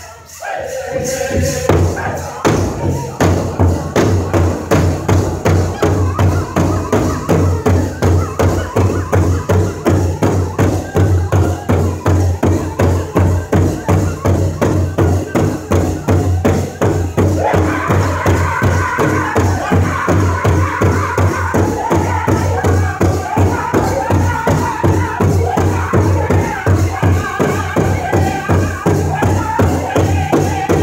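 Powwow drum group striking a large shared hand drum in unison with drumsticks in a steady, fast beat, with men singing over it. After a short lone voice at the start, the drum comes in about two seconds in, and the singing grows louder and higher about 17 seconds in.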